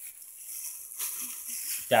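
Plastic bag and packaging rustling and crinkling as packets of cat food are handled, with a light knock about a second in.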